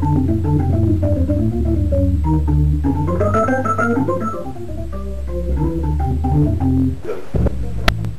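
Hammond organ (a 1936 Model A with B3 internals) played through Leslie 142 speakers: a run of quick melody notes over held low bass notes. The bass drops out about seven seconds in, and a sharp click comes near the end.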